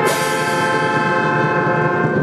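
Brass band music: trombones and trumpets holding one long chord that fades out near the end.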